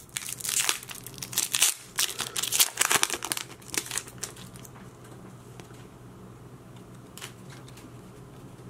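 Foil wrapper of a Pokémon booster pack crinkling and tearing open, a dense run of sharp crackles over the first four seconds. After that the loose cards are handled softly, with a faint tick now and then.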